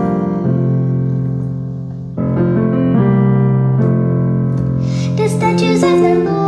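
Electronic keyboard playing a slow piano accompaniment in sustained chords; one chord fades away and a new one is struck about two seconds in.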